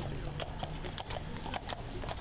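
Horses walking on a paved road, their hooves clip-clopping in an uneven run of sharp knocks.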